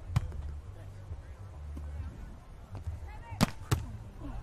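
A beach volleyball being struck by players' hands and arms during a rally: one sharp hit just after the start, then two sharper, louder hits about a third of a second apart near the end. A steady low rumble runs underneath.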